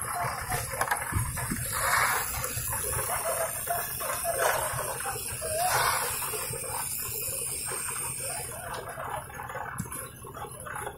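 Concrete mixer drum churning wet concrete: a continuous sloshing, rumbling noise that swells about two, four and a half and six seconds in, with distant voices faintly underneath.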